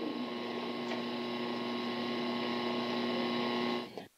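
Steady electrical hum made of several pitched tones over an even hiss, the background noise of an old room recording, which cuts off abruptly just before the end.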